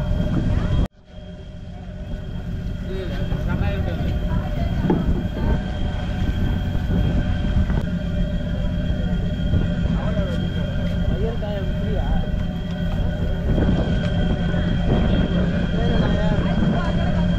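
Fishing boat engine running steadily, a low rumble with a constant hum, under people's voices. The sound drops out for a moment about a second in, then comes back.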